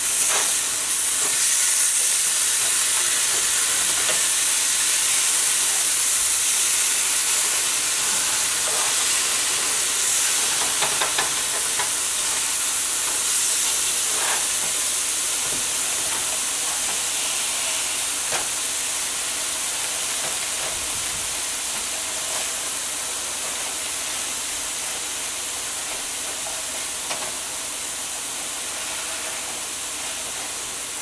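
Chicken breasts sizzling in frying pans: a steady hiss that slowly grows quieter, with a few light clicks of a spatula against a pan as the pieces are turned.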